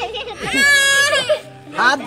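A toddler crying: one long, high wail starting about half a second in and lasting about a second.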